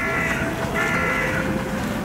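A bird calling twice, two drawn-out calls, the second lasting close to a second.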